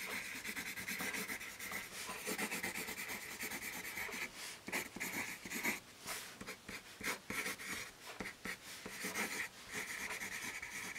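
Tombow Mono 100 B-grade graphite pencil writing cursive on paper: a soft scratching of pencil strokes, broken by short pauses between strokes and letters.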